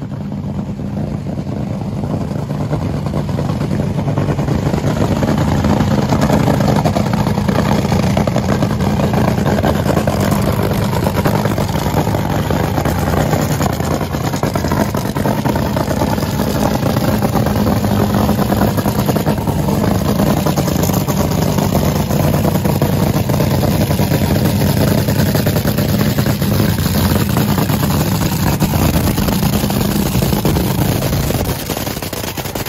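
A two-seat top fuel dragster's supercharged nitromethane V8 idling loud and steady as the car backs up toward the start line after its burnout. It grows louder over the first several seconds as the car comes closer.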